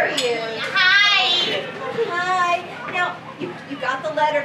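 High-pitched voice giving two drawn-out, wavering cries, about one and two and a half seconds in, amid other voices.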